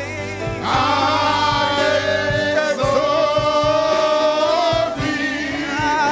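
Gospel worship singing by a choir and congregation, with a long held note that starts about a second in.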